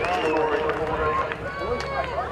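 Several voices calling and shouting at once on a rugby league field, overlapping so that no words come through clearly.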